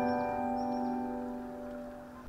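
Background piano music: a held chord slowly fading away.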